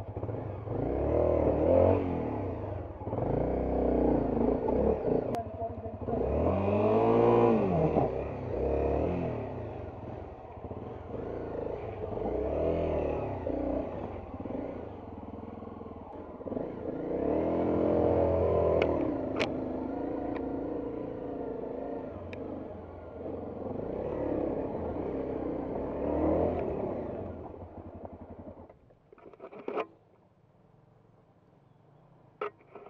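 Off-road trail motorcycle engine revving up and down over and over as the bike is ridden along a rough, stony dirt track, with a few sharp knocks in the middle. The engine note falls away near the end.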